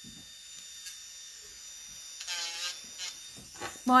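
Electric nail drill with a sanding band running with a faint, steady high whine as it files a fingernail; the whine stops just before the end.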